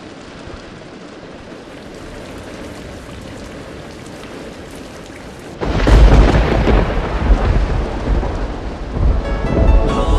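Steady rain falling. About halfway through, a sudden loud thunderclap breaks in and rolls on as a low rumble under the rain.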